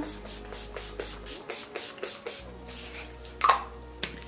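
Urban Decay All Nighter setting spray misted from its pump bottle in a quick series of about ten short hisses, over soft background music; a single sharp click follows near the end.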